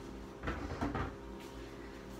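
A short cluster of knocks and clatters about half a second in, lasting about half a second, typical of a kitchen cupboard door being opened or shut.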